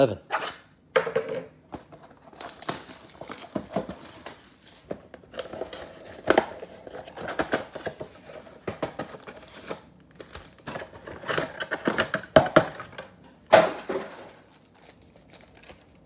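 Plastic shrink wrap crinkling and tearing as it is stripped from a cardboard trading-card box, then the box being pulled open; a dense run of irregular crackles and rips.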